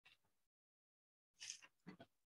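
Near silence, broken by a few faint, brief sounds, the loudest near the end.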